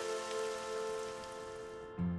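Cartoon rain sound effect: a steady patter of rain that fades out over the two seconds, with a few soft held music notes underneath.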